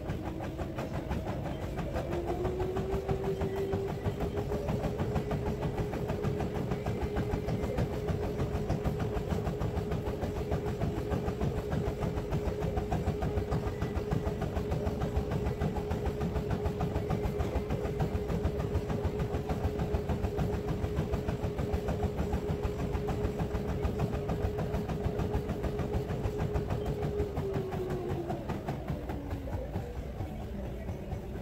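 Treadmill motor whining as the belt speeds up over the first few seconds, running at a steady pitch, then winding down near the end, under the rumble of the belt and footfalls on it.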